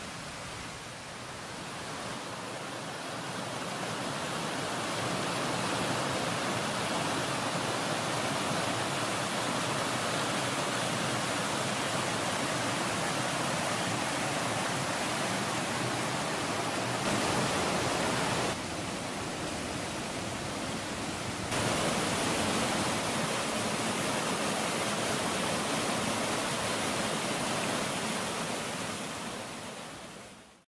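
Creek water rushing and cascading over rocks in a small waterfall: a steady rush that swells in over the first few seconds, jumps in level abruptly a few times in the middle, and fades out at the very end.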